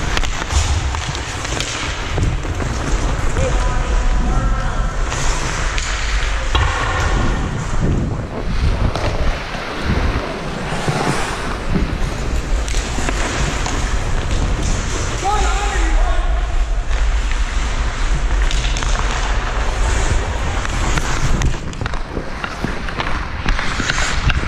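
Ice hockey play heard from a player's helmet: skate blades scraping and carving on the ice with wind rumbling on the microphone, sharp clacks of sticks and puck throughout, and players shouting now and then.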